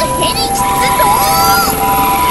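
Helicopter rotor sound effect, a fast low chopping, played under bright children's background music with held notes.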